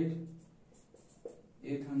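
A few short, faint strokes of a marker pen writing on a board, from about half a second to a second and a half in.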